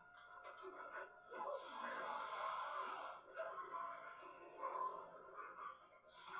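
Faint film soundtrack: quiet music with steady held tones, and a long breath about one and a half seconds in.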